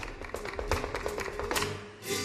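Flamenco footwork (zapateado): a quick run of sharp heel and toe strikes from a dancer's boots on a stage floor over a held musical note. The strikes thin out and fade near the end.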